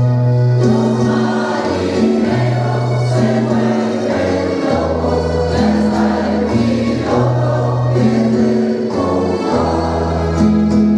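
Mixed choir of men and women singing a habanera, in long held notes with the low voices holding a steady bass line.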